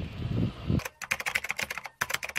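Typing sound effect: a rapid run of key clicks, about ten a second, starting just under a second in as on-screen text types itself out letter by letter. Before it, a short low rumble from the outdoor footage cuts off abruptly.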